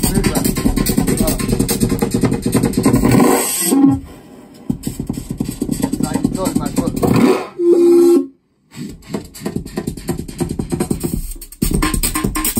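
Live electronic music from a synthesizer rig mixed on a desk. It is a dense, busy pattern that drops away about four seconds in with a falling pitch sweep, comes back thinner and sweeps up again, then holds a short steady tone. The sound cuts to silence for a moment just after eight seconds, and the full pattern returns near the end.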